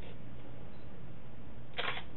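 Steady low hum and hiss of the room recording, with one short camera shutter click near the end as a photograph is taken.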